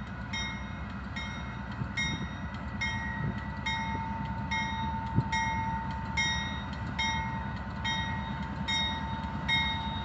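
Approaching Union Pacific freight train led by diesel locomotives, a low steady rumble, with a bell ringing evenly about twice a second.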